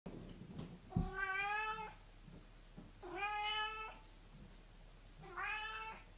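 Three drawn-out animal calls with a steady pitch, each just under a second long and about two seconds apart.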